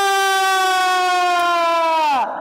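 A single long, high note from a puppet-show performance, held almost level with a slight downward drift, then dropping away at the very end.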